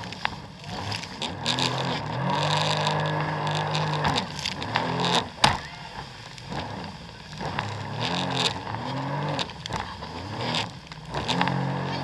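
Jet ski engine being throttled up, held and eased off about three times, with sharp slaps of the hull against the waves and spray and wind noise throughout.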